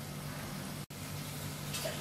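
Low steady background hiss with a faint hum (room tone), broken by a momentary dropout to silence just under a second in, like an edit splice.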